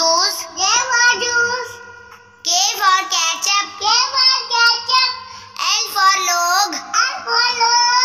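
A child's voice singing an alphabet phonics chant, each letter and word sung in short repeated phrases over a light backing track.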